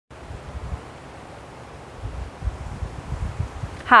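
Wind buffeting a clip-on microphone: irregular low rumbles that grow more frequent about halfway through, over a faint steady hiss.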